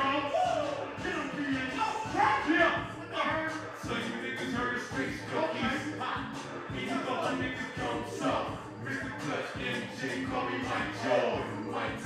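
Live hip-hop beat with a steady rhythm playing over a stage PA, with a rapper's voice over it.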